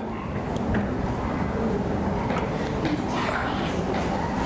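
Indistinct murmur of several children's voices in a classroom, with no one speaking clearly.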